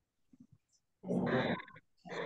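A pet animal's call of just under a second, coming in about a second in after a short silence.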